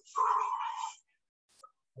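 A man's deep exhale out through the mouth, one breathy rush lasting under a second, emptying a full belly breath. A faint click follows about a second and a half in.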